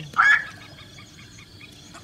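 A black-crowned night heron's single harsh call, loud and brief, shortly after the start, followed by a faint, rapid run of short notes.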